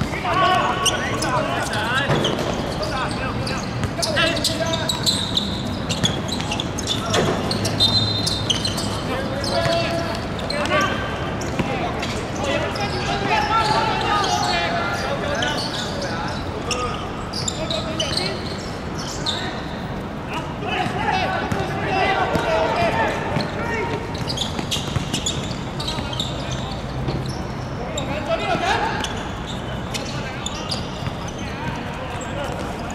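Footballers calling and shouting to each other across an outdoor pitch, with scattered thuds of the ball being kicked and bouncing on the hard playing surface.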